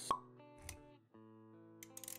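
Intro-animation sound effects over music: a sharp pop right at the start, then a soft low thud, over held musical notes that cut out briefly about a second in and come back.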